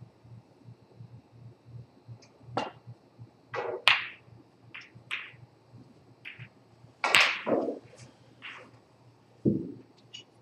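A snooker shot: the cue tip striking the cue ball, then hard ball-on-ball clicks and knocks off the cushions as the balls run around the table, a string of separate sharp impacts with the loudest about four and seven seconds in. A duller thump comes near the end.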